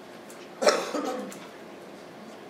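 A person coughing once, about two-thirds of a second in, over steady room noise.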